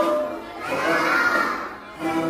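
A roomful of young children shouting together in one long group cheer that swells about half a second in and fades away near the end.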